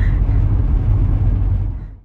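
Steady low rumble of a taxi's engine and tyres on the road, heard from inside the back of the cab, fading out near the end.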